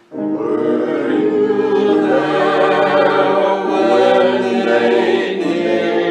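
A choir singing in harmony, a new sung phrase starting at once after a brief break.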